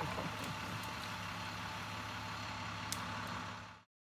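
Utility bucket truck's engine running steadily with a low hum, and a brief laugh near the start. The sound fades out just before the end.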